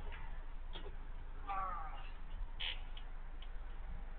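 A brief, faint fragment of a person's voice about one and a half seconds in, with a few isolated small clicks over a steady low hum.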